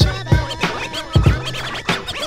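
1990s hip hop instrumental outro: a drum beat with a deep bass line and DJ turntable scratching over it, with no rapping.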